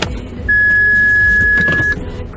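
A single steady high-pitched warning beep from the car's dashboard, held for about a second and a half, over the low drone of the moving car's cabin.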